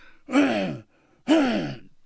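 A man coughing twice, the two coughs about a second apart.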